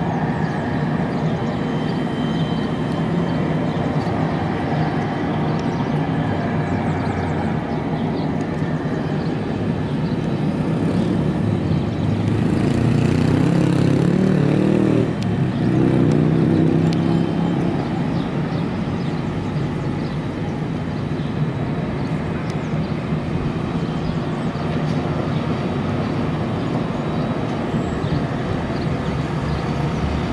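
Engines of a twin-engine propeller aircraft running steadily as it taxis, swelling louder for a few seconds around the middle.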